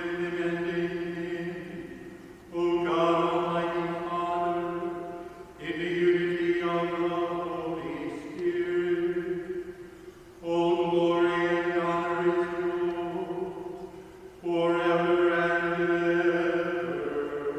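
A male voice chanting liturgical phrases on one held reciting note, four phrases with short breaks for breath between them.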